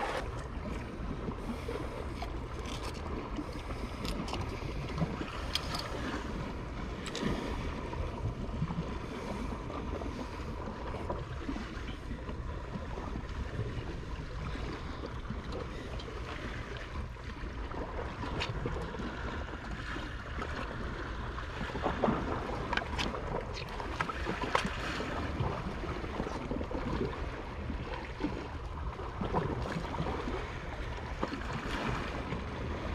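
Sea water washing against a rocky shore, with wind rumbling on the microphone and scattered small clicks and knocks from handling and footsteps on the rocks.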